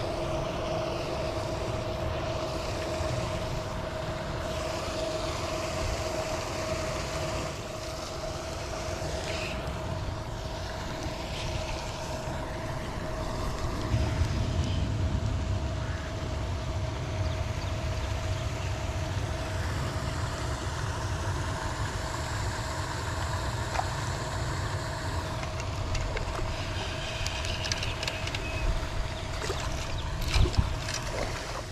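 Pond paddlewheel aerator running: a steady motor hum over churning water that holds throughout.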